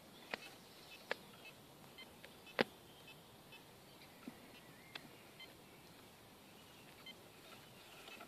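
Fisher F22 metal detector giving faint short beeps as its coil is swept over a target it reads as non-iron, with a few sharp clicks, the loudest about two and a half seconds in.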